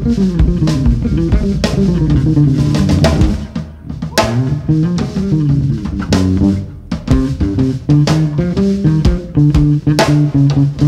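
Live jazz on electric bass and drum kit: the bass plays a prominent moving line of notes against steady drum hits, easing off briefly about four seconds in.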